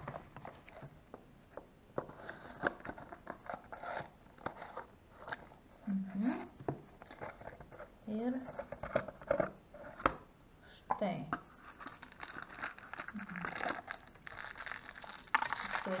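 Handling and opening a cardboard gift box: scattered clicks and scrapes of the box and lid on a glass tabletop, with paper and plastic packaging crinkling, busiest near the end as a plastic bag is lifted out.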